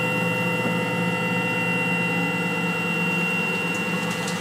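Tormach PCNC1100 mill's Y-axis drive jogging the table at constant speed: a steady whine made of several fixed pitches that does not change in pitch or loudness.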